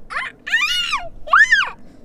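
A young child squealing: three short, very high-pitched cries that rise and fall in pitch, the last one the highest.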